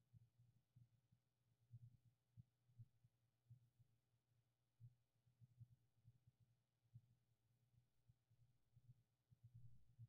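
Near silence: room tone with a faint steady hum and soft, irregular low thuds.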